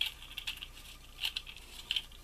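White plastic spiral guide of an EK Tools Curvy Cutter turned by hand back toward its center, giving a few faint, separate plastic clicks and scrapes.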